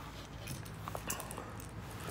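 Quiet handling noise: a few light clicks as hard plastic crankbaits are set down and picked up, over a low steady hum.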